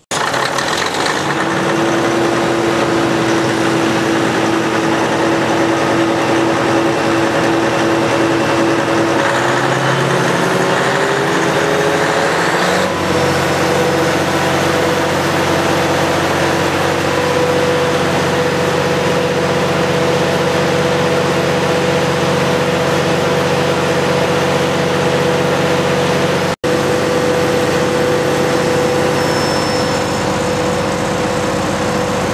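Caterpillar D343 turbocharged six-cylinder diesel engine of a 250 kW generator set running steadily and loud. About ten seconds in its pitch rises over a few seconds, as the engine speeds up, and then holds steady at the higher speed.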